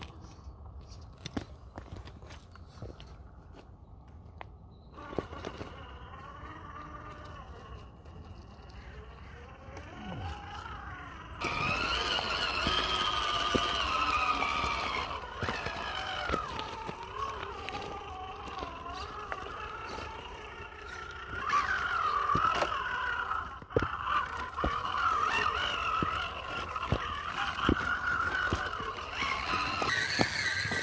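Electric motor and geared drivetrain of a 1/10-scale Element RC rock crawler whining, the pitch rising and falling with the throttle as it crawls over rock. The whine is faint at first and grows louder about 11 s in and again about 21 s in, with scattered ticks of tyres and stones on rock.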